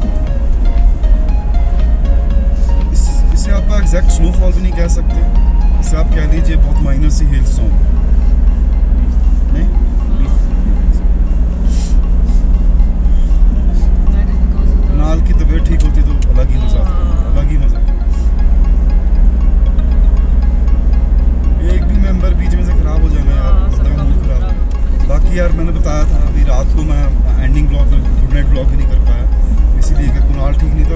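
Background music: a song with melodic lines over a steady, heavy low bass and light percussion.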